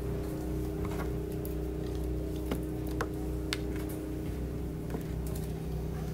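A steady low hum with a few held tones beneath it, and a handful of light clicks and knocks scattered through, the sharpest about three seconds in.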